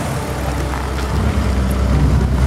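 A 2000 Ford Taurus's 3.0-litre 24-valve DOHC V6 idling steadily with the hood open. The engine is said to have a rap, but no knock is heard at idle.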